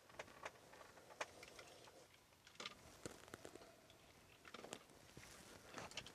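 Very faint, scattered small clicks and short rustles of someone shifting and handling gear in a cloth hunting blind, over near silence.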